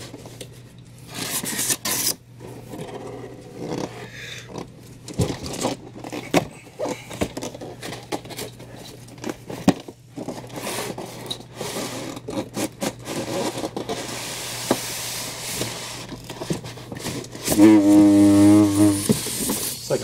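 Cardboard box being worked up off a tight styrofoam packing block: repeated irregular scraping and rubbing of cardboard on foam, then near the end a loud, wavering foghorn-like honk of about a second and a half as the box slides up off the foam.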